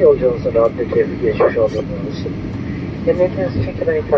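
Speech over the steady cabin rumble of a Boeing 737-800 rolling on the ground after landing.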